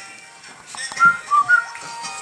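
Musical greeting card playing its tune: after a quiet start, three short, high, whistle-like notes about a second in.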